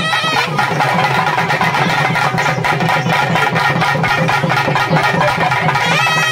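Festival drum band playing a rapid, steady beat of several strokes a second. A piped melody drops out just after the start and comes back in near the end.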